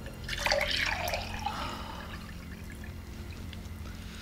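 A drink poured into a glass for about a second, the pitch rising as the glass fills.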